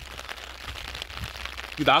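Steady rain pattering on an open umbrella overhead, a soft even hiss.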